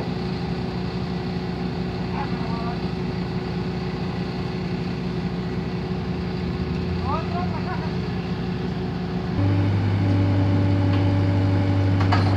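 A work vehicle's engine running steadily. About nine seconds in, it abruptly becomes louder, with a lower, different drone, as if the engine speed changes or a second machine starts up.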